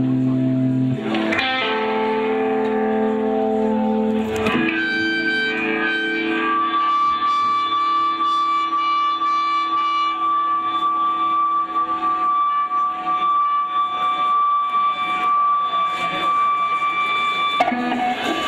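Electric guitar through effects, live on stage, playing long held notes. The pitch shifts twice in the first few seconds, then settles into one high note held steadily for about ten seconds.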